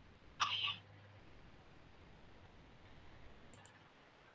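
Near silence, broken about half a second in by one short, sharp sound, with faint ticks near the end.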